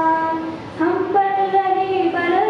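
A girl singing solo into a microphone, holding long steady notes, with a short break for breath a little past halfway before the next phrase begins.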